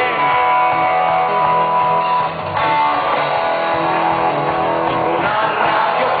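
A rock band playing live with electric guitar to the fore, long held guitar notes over bass and drums, with a brief dip in loudness about two seconds in. Recorded from within the audience on a camera microphone.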